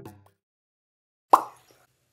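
The tail of the background music fades out, then silence, then a single short plop about a second and a half in, a sound effect for the logo card.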